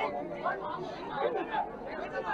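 Low background chatter of several men's voices from a crowd pressed around the speaker, quieter than the main voice.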